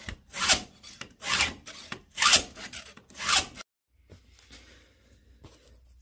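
Round chainsaw file, 5.5 mm, drawn across the cutter tooth of a Stihl saw chain held in a file guide, sharpening the tooth. Four filing strokes about a second apart, then the sound stops suddenly about halfway through.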